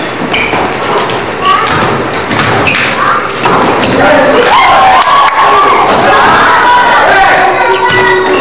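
Basketball game in a gym: thumps of the ball bouncing and players' feet on the court, with crowd voices shouting in the hall, louder from about halfway in.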